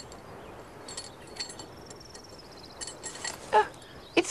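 Light metallic clinks and rattles of scrap metal being rummaged through in a junk heap. A short run of rapid high ticks comes in the middle, and a brief pitched animal-like vocal sound comes near the end.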